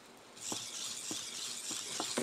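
EMO desktop robot's small motors whirring with a scatter of light clicks, starting about half a second in, as it reverses into the box behind it and pushes against it. It has no rear proximity sensor.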